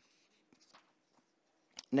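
Near silence with a few faint, soft ticks of paper being handled about half a second in, from the pages of a book on a lectern. A man's voice starts at the very end.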